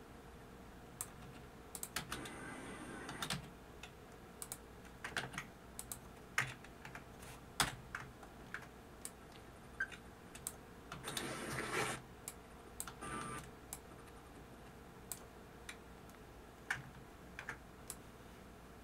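Computer keyboard keys pressed in irregular single clicks, with two short flurries of rapid key presses, one about two seconds in and one about eleven seconds in.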